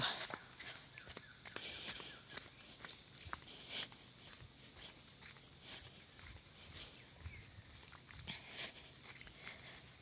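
Footsteps walking on a wet dirt track, irregular soft scuffs and steps. A steady high-pitched insect chorus drones behind them.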